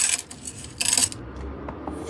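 Gold chains jingling and clinking as they are handled in the hand: two short bursts of jangling metal links about a second apart, then a few faint clicks.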